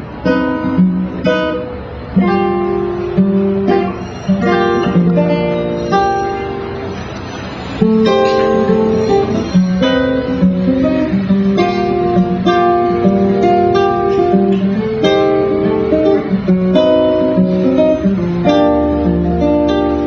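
Guitar playing jazz chord voicings, struck one after another and left to ring, walking through minor ii–V–i changes into G minor: a half-diminished chord, a dominant seventh with a flat nine, and G minor seventh.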